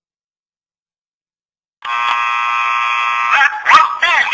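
An electronic buzzing tone that starts suddenly about two seconds in and holds steady for about a second and a half, then breaks into warbling, gliding chirps.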